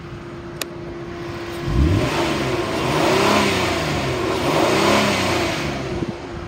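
2012 Ford Explorer's 3.5-liter V6 idling, then revved twice from about two seconds in, the pitch climbing and falling back with each rev. It revs up smoothly and sounds good, a healthy engine.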